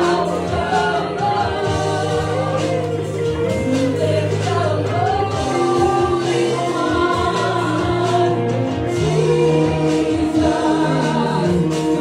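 A church worship team and congregation singing a gospel worship song together, with instrumental backing that holds sustained low notes under the voices.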